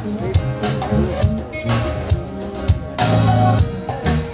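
Smooth-jazz band playing live: drum kit and congas over an electric bass line with synthesizer keyboard, with a loud accent about three seconds in.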